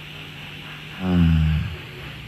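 A low, drawn-out 'ehh' from a person's voice about a second in, falling slightly in pitch as a hesitation sound, heard over a phone line.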